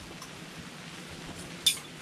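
Steady low hiss, then one sharp metallic click about three quarters of the way through as the fishing pliers are handled.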